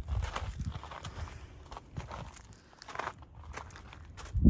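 Footsteps on gravel: a few irregular crunching steps, with low rumble underneath.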